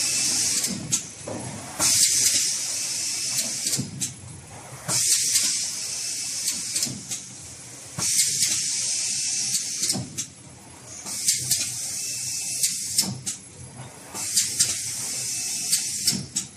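Automatic paper-tube inkjet printing machine running, with a burst of high hiss about every three seconds as each cycle comes round. Sharp clicks and knocks from the mechanism are scattered over a steady running noise.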